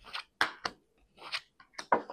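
A deck of tarot cards being shuffled by hand: five or six short card slides and snaps with brief gaps between them.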